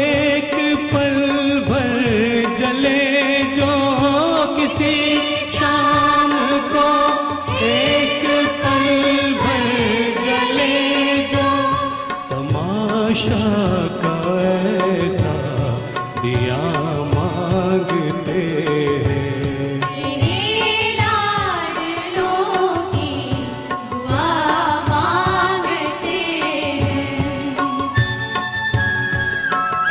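Male vocalist singing a Hindi film song live, in a slow devotional style, backed by an orchestra with violins and steady percussion.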